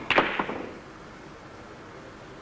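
Carom billiard balls clicking together during a three-cushion shot: a sharp knock right at the start, then a couple more clicks within half a second as the balls hit.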